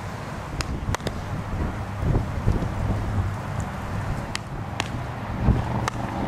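Wind buffeting the microphone with a low rumble, broken by a handful of short sharp cracks from baseball infield practice: ball off the bat and into a glove.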